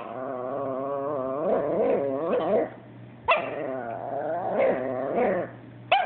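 Chihuahua "talking and complaining": two long, drawn-out vocalisations with wavering pitch. The second starts sharply about three seconds in. She is complaining that the Yorkie took her toy.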